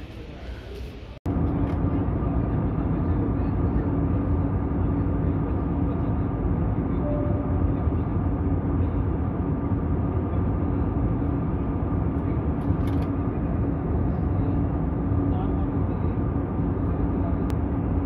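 Steady cabin noise of a jet airliner in flight, heard from a window seat over the wing: an even rush of engine and airflow with a steady low hum. It cuts in suddenly about a second in, after a brief stretch of quieter terminal room sound.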